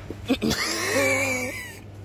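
A man's drawn-out yelp, held for about a second at a steady pitch after a couple of short sounds, made as the dog shock collar he is wearing goes off.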